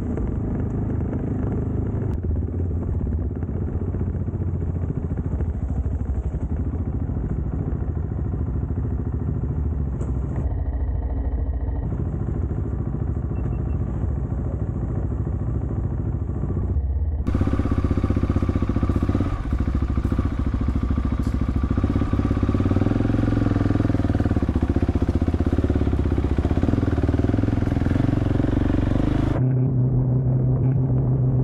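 Dual-sport motorcycle engine running at a steady pace while riding on a gravel track. A little over halfway through, the sound becomes brighter and slightly louder.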